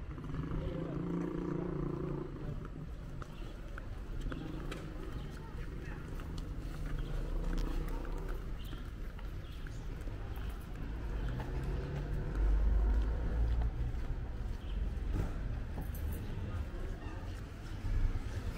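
Street ambience: a steady low rumble of traffic with faint voices, the rumble swelling about twelve seconds in.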